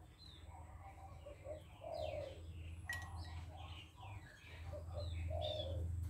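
Birds calling outdoors: short falling chirps from songbirds, with low dove-like coos twice, about two and five seconds in. A single sharp click about halfway through.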